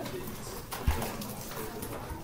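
Room noise with faint murmuring voices and one low thump just under a second in.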